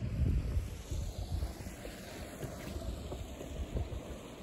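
Wind buffeting the microphone: an uneven, gusty low rumble, strongest in the first second and easing off after.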